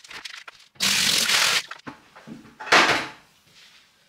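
Water poured from a bucket splashing onto the bare glass bottom of an empty aquarium, in two gushes: a longer one about a second in and a shorter one near three seconds.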